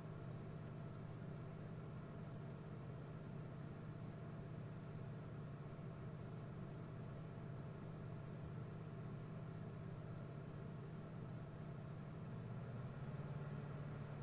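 Steady low electrical-sounding hum with a faint hiss: the call's background noise floor, unchanging throughout.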